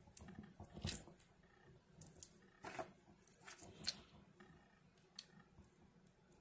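Faint, irregular clicks and rattles of small steel hex screwdriver bits being pulled from and handled against a clear plastic six-chamber bit cartridge, with the loudest clicks about a second in and near four seconds in.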